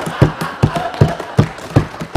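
Legislators thumping their desks in approval, a steady beat of low knocks about two and a half a second, over the noise of the house laughing and murmuring.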